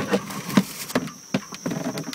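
Retractable cargo cover in a car's rear cargo area being pulled out by hand, giving a few short plastic clicks and knocks.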